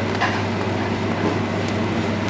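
Steady low mechanical hum with an even hiss behind it.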